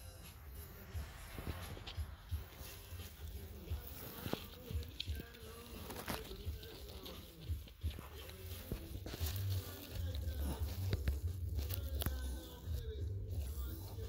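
A dog sniffing and rustling in grass at a burrow under a wooden board, with scattered sharp clicks and a low rumble of handling or wind on the microphone that grows louder about ten seconds in. The animal hiding in the burrow gives occasional chirps, a shrill shriek.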